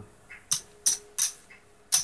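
Casino chips clicking against each other as a hand picks them up off the table felt: four sharp clacks, the first about half a second in and the last near the end.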